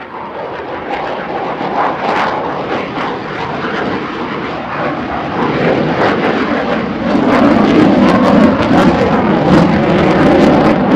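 F-15J Eagle fighter's twin turbofan jet engines at high power during a display pass. The noise grows steadily louder, with a rough crackling edge, and is loudest from about seven seconds in.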